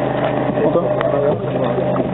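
A steady engine drone with background voices, and a single sharp click about a second in.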